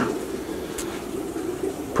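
Steady low hum of running aquarium equipment such as pumps and filtration, with one sharp click at the very start.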